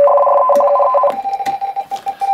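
RTTY radio-teletype signal from the Icom IC-718 receiver's speaker: a loud, rapid warble switching between two tones. About halfway through it gives way to a fainter single keyed tone, with a couple of clicks, as the audio cable's plug goes into the phones jack.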